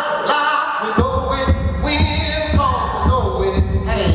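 Live solo blues performance: a sung line ends about a second in, then a heavy low thumping beat comes in, about two beats a second, under sustained, bending melodic notes.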